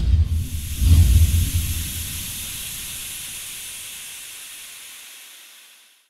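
Intro sound effects: a deep booming hit right at the start and another about a second in, followed by a long hiss that slowly fades and cuts off near the end.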